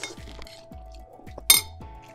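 Metal spoon scraping and clinking against a ceramic plate of fried rice, with one sharp clink about one and a half seconds in as the spoon is set down on the plate, over soft background music with a steady beat.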